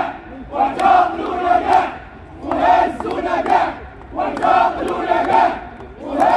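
Crowd of protesting lawyers chanting a slogan in unison, three chants about a second and a half each with short pauses between.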